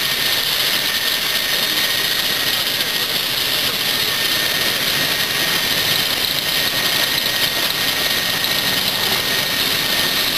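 Steady rushing hiss with a thin, high, unbroken tone running through it, from a BR Class 08 diesel shunter slowly moving LMS Class 4MT locomotive No.43106.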